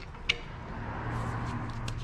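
Quiet repair-shop background: a steady low hum and a soft hiss, with one light click about a quarter of a second in and a couple of faint ticks near the end.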